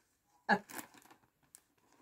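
A woman says a single word, then faint rustling as she handles a cloth bag, with one small click about one and a half seconds in.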